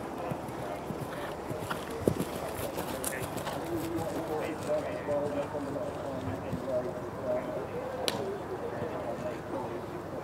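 Horse cantering on turf, its hoofbeats coming as soft irregular thuds, with a sharp knock about two seconds in, over a background murmur of voices.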